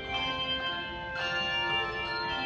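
Handbell choir ringing chords, the bells' tones ringing on and overlapping. A new chord is struck just after the start and another about a second in.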